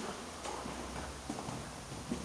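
Footsteps on a hard corridor floor: a few irregular knocks and scuffs as someone walks.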